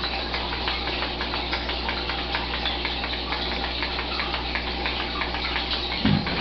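A person gulping down a glass of milk in one long drink, with small irregular swallowing and splashing sounds over a steady low hum.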